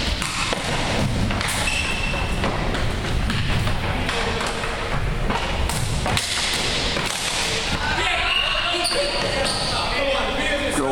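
Floor hockey play on a gym's hardwood floor: sticks and ball knocking repeatedly, sneakers squeaking briefly now and then, and players calling out, most clearly near the end.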